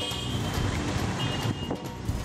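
Busy city street traffic with motor scooters passing, under background music.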